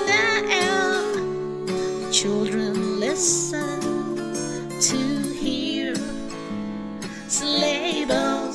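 Music: a solo voice singing a slow Christmas song over strummed acoustic guitar, holding a long wavering note near the start.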